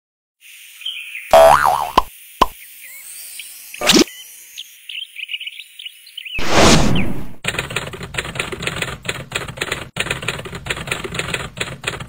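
Cartoon sound effects for an animated title card: a springy boing, a click, a rising whoosh and a louder swoosh over faint high chirps. About seven seconds in they give way to a short, bouncy music jingle with a quick, even beat.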